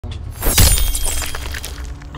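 A sudden loud crash about half a second in, followed by about a second of rapid scattered clicks that fade away.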